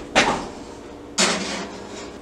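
Kitchen handling noise: a sharp knock that dies away over about half a second, then about a second later a brief sliding or rustling sound.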